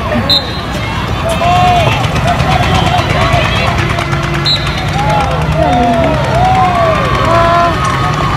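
Several people shouting and calling out in short rising-and-falling cries during a field hockey goalmouth scramble, with sharp clicks of sticks and ball scattered through it.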